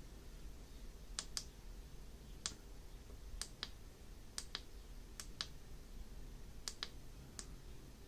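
Front-panel push buttons on an Ascon Tecnologic K39 PID temperature controller clicking faintly as they are pressed to step through its menu: about a dozen short, sharp clicks, several in quick pairs.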